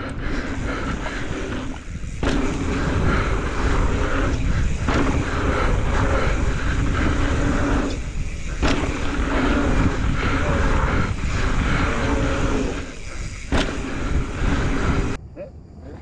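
Mountain bike ridden fast over dirt jump rollers, heard from a camera on the bike or rider: wind buffeting the microphone and knobby tyres rumbling on hardpacked dirt, with a buzz from the rear hub's freewheel while coasting that breaks off a few times, and a couple of sharp knocks from the bike over the bumps. Near the end the sound drops suddenly and becomes quieter.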